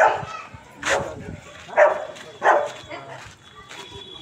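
A dog barking, four barks under a second apart, with a thin steady high tone starting near the end.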